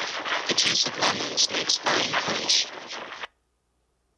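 A distorted recording of a spoken sentence played over the room's loudspeakers, turned into a rough hiss that pulses with the syllables so the words cannot be made out. It lasts about three seconds and cuts off suddenly.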